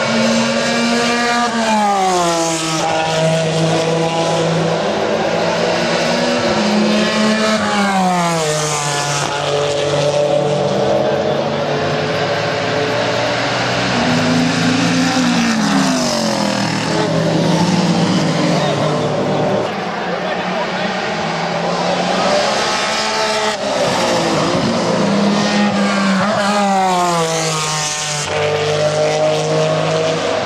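Several sports racing cars' engines as the cars pass through a corner one after another: each drops in pitch under braking and downshifting, then rises again as it accelerates away. The engines overlap and run loud throughout.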